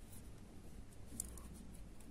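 Faint clicking and rubbing of metal knitting needles working mercerized cotton yarn, with a few light ticks about a second in, over a low hum.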